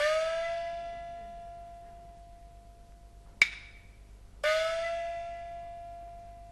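Peking opera small gong struck twice, about four and a half seconds apart. Each stroke rings and slowly fades, its pitch bending up just after it is hit. A single sharp wooden clack falls shortly before the second stroke.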